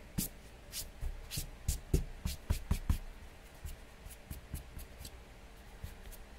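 Trading cards in rigid clear plastic holders clicking and tapping against each other as they are handled and stacked by hand: a quick run of small clicks over the first three seconds, thinning to a few scattered taps after.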